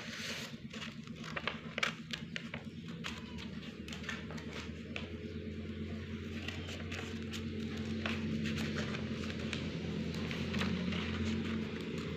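Scissors snipping through paper, a run of short irregular clicks with paper rustling. A steady low hum sits underneath and grows somewhat louder over the second half.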